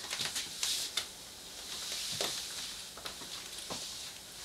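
Faint rustling of a shiny wetlook catsuit's fabric as the wearer turns her body, with a few soft clicks.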